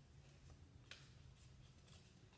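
Near silence: faint room hum with a few soft rustles and clicks of a small piece of paper being folded by hand, the clearest about a second in.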